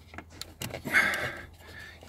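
Small plastic clicks and scraping as a USB adaptor socket is pushed by hand into the lighter hole of a car's centre console, the fit tight enough to need force. A short hiss follows about a second in.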